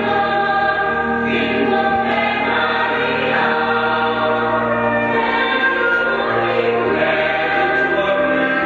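Mixed choir of women's and men's voices singing a hymn in harmony, over sustained low notes from an electronic keyboard accompaniment.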